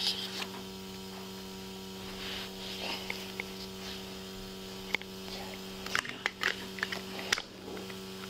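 A steady electrical hum, with a few sharp clicks about five to seven seconds in.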